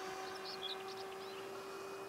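Faint, steady hum of the X5 VTOL drone's propeller motors as it flies in airplane mode, with a few faint high bird chirps about half a second in.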